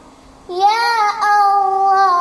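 A girl singing a devotional song unaccompanied: after a brief pause for breath about half a second in, she starts a long held vowel that bends up in pitch and then settles on a steady note.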